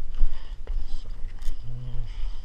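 Gloved hands digging and scraping through soil and grass roots in a small hole, with a few sharp clicks over a constant low rumble. A short hummed voice sound comes near the end.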